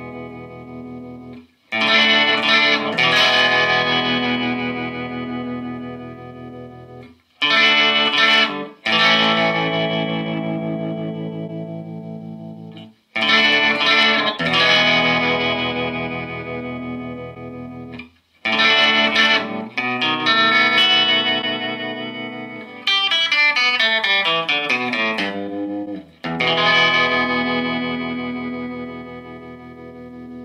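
A Gretsch electric guitar played clean through a Fender Tone Master Deluxe Reverb Blonde and its Celestion speaker, on the vibrato channel with no reverb or pedals. Rock and roll chords are strummed and left to ring out and fade between strokes, with a descending run of notes about three quarters of the way through.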